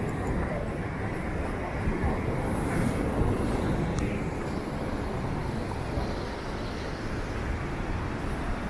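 Wind buffeting the microphone over the rush of surf breaking against the rocks: a steady, rumbling noise with no distinct events.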